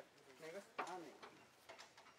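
Faint men's voices talking in the background, with a sharp click a little under a second in.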